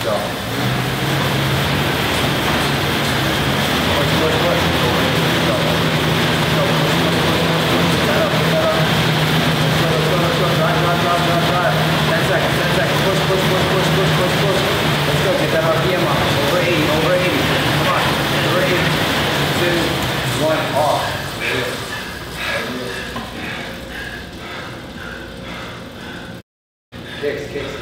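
Air bike's fan whirring loudly under an all-out sprint: a steady rushing whoosh with a low hum, starting right after the countdown and fading over the last few seconds as the pedalling stops. A man's straining vocal sounds come through over it.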